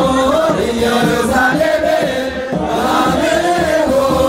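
A congregation singing an Orthodox mezmur (hymn) together in Tigrinya, with a steady drum beat underneath.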